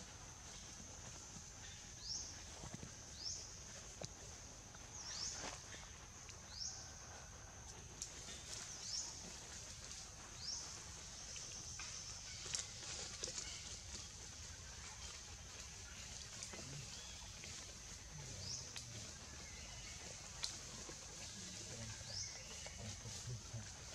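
Forest ambience: a steady high-pitched drone, with short rising chirps repeating every one to two seconds and a few faint clicks.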